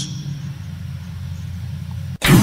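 Steady low hum left in the pause after speech in a recorded soundbite, with no words over it. It cuts off abruptly near the end.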